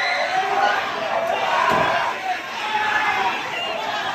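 Crowd of young people shouting and yelling over one another in a scuffle with police, with a single thud a little before the middle.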